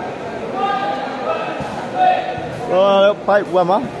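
Spectator hubbub in a large indoor hall, with a short call about halfway and then three loud shouts near the end, their pitch bending up and down.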